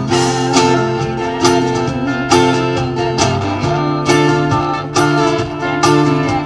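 A live acoustic guitar, electric guitar and cajon trio playing an instrumental passage: the acoustic guitar is strummed in steady chords over a cajon beat, with electric guitar lines.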